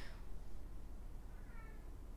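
Quiet room with a faint, brief high-pitched call lasting about half a second, a little past the middle.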